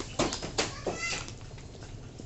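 A long bamboo pole knocking against tree branches, a few sharp knocks in quick succession. About a second in comes a short, high animal cry, like a cat's meow.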